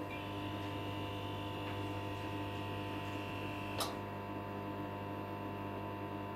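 Steady electrical buzz of old fluorescent lights: a low hum with several thin, steady higher tones stacked over it. A single short click comes just before four seconds in.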